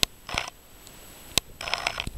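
A few sharp clicks and knocks from a handheld camera being handled while it zooms; the sharpest comes about one and a half seconds in. A short spoken word follows near the end.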